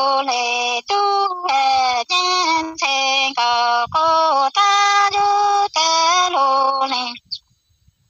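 A woman singing Hmong lug txaj unaccompanied, in phrases of long held notes that jump from one pitch to the next with short breaths between. The singing stops about seven seconds in.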